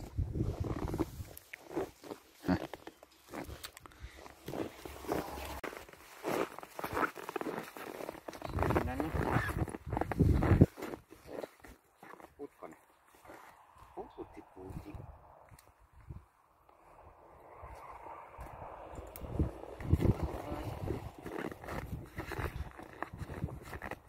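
Sled huskies on leads making short whining vocal sounds that bend in pitch, the clearest about nine to ten seconds in, with footsteps and leash handling crunching and knocking in the snow.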